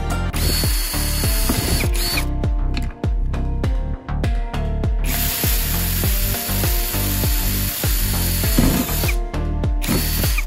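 Cordless drill running in two bursts, about two seconds and then about four seconds long, boring a hole through a flattened PVC plastic sheet, with a steady motor whine. Background music with a steady beat plays throughout.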